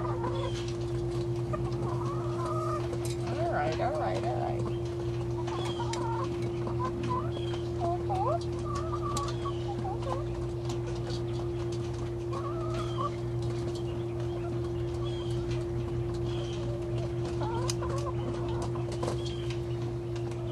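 A small flock of hens clucking softly, short scattered calls one after another, as they peck feed from a hand.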